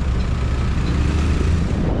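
Steady low rumble of city road traffic and vehicle engines, with wind noise on the microphone of a moving rider.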